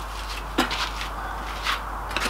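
Two light clicks about a second apart, from hand tools being handled on a wooden moulding bench, over a steady background hiss.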